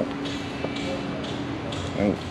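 Harley-Davidson LiveWire electric motorcycle switched on and standing still, giving off a faint steady hum, with soft voices in the background.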